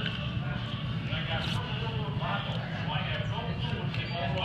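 Indistinct background chatter of other diners over a steady low hum of a busy dining room.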